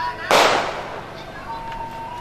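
A single loud, sharp bang about a third of a second in, dying away over about half a second, over faint voices and music.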